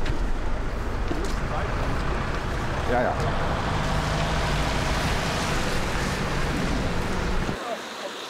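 Loud street traffic noise with a car running close by, a steady rumble that cuts off suddenly near the end.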